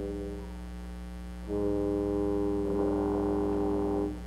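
Concert wind band holding long, sustained brass chords: one chord fades away, then a new full chord enters about a second and a half in and is held, with a fluttering figure joining it near the end. A low steady mains hum runs underneath.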